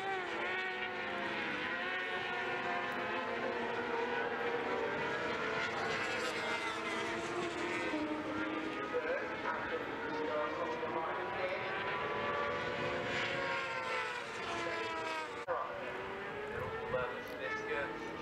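600cc racing motorcycles passing through a corner, several engine notes overlapping, climbing and falling in pitch as the riders work through the gears. The sound breaks suddenly a little before the end, then the engine notes carry on.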